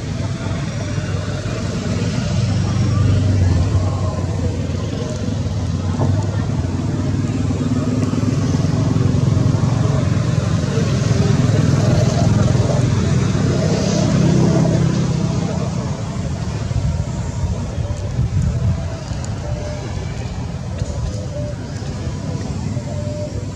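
Steady low hum of motor vehicles running nearby, swelling a few seconds in and again through the middle, with people's voices mixed in.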